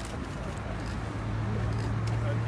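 Murmur of a small outdoor crowd over a steady low hum that grows slightly louder.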